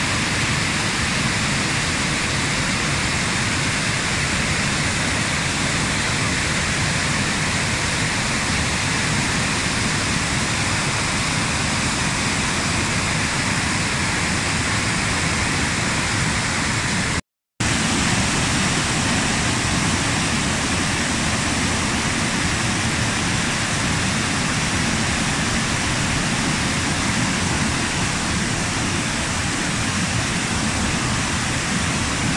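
Waterfall cascading over rocky steps: a loud, steady rush of falling water. The sound cuts out completely for a split second a little past halfway.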